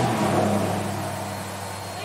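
A motor vehicle driving past, its engine note dropping slightly and the sound fading away.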